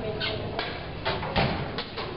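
Faint background chatter of children's voices, with a single thump about one and a half seconds in.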